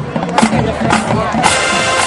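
High school marching band playing: sustained brass chords over the drumline, with a few sharp percussion hits.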